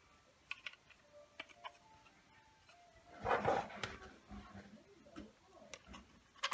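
Small clicks and handling noises as a cut-glass knob with a brass stem is fitted and turned onto a round painted lid, with a longer, louder handling sound about three seconds in.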